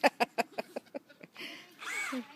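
A person laughing, a quick run of short 'ha' bursts that fade out over about a second. Near the end comes a brief whine that rises and then falls in pitch.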